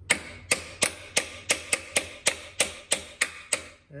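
Light hammer taps on a nut threaded onto the end of an Align AL-200S power feed's gear shaft, about three a second and a dozen in all, each with a short ring, knocking the shaft loose so the nylon gear can come off.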